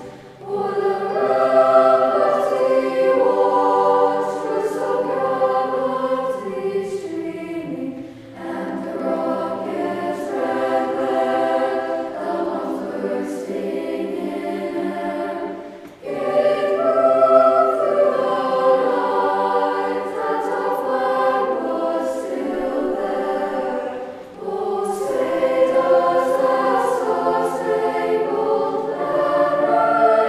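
Middle school choir singing together in sustained phrases, with brief breaks for breath about every eight seconds.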